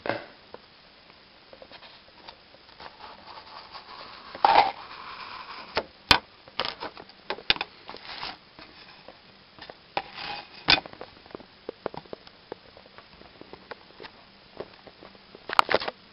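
Handling noise of cardboard, a wooden ruler and a marker on a wooden tabletop: scattered sharp clicks and knocks, with a short scraping rub about four and a half seconds in and a cluster of clicks near the end.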